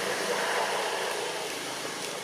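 Steady background noise with no distinct event standing out.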